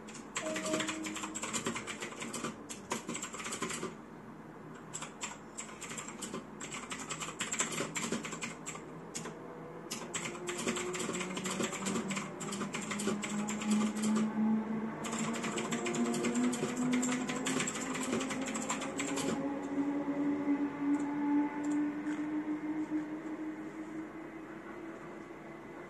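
Typing on a mechanical keyboard: bursts of rapid key clicks with short pauses between them, stopping with a few seconds left. A low hum slowly rises in pitch through the second half.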